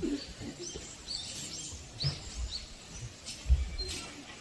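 Small birds chirping: several short, high chirps in quick succession in the first two seconds and a few more after, over low thumps on the microphone, the loudest about three and a half seconds in.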